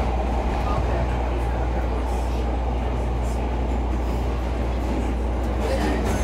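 CTA 5000-series subway car running steadily through the tunnel: a continuous low rumble of wheels on rail and traction motors heard from inside the car.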